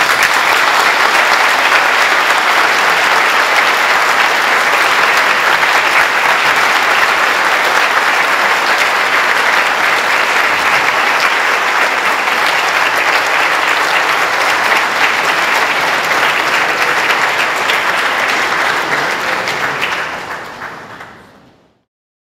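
Audience applauding: dense, steady clapping for about twenty seconds that fades out near the end.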